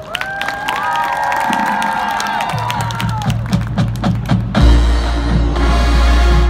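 Marching band opening its show: winds hold a chord over scattered percussion hits, then a deep bass swells and, about four and a half seconds in, a loud low sustained tone takes over beneath the music.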